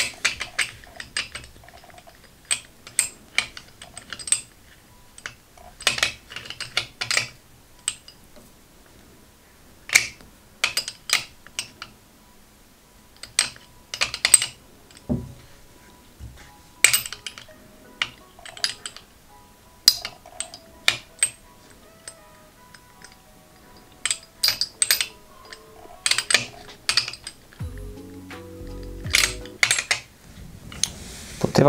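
Metal balls of a wooden pyramid puzzle clicking against each other and knocking onto the wooden tray as they are placed and rearranged by hand, in irregular clusters of sharp clicks. Faint background music underneath.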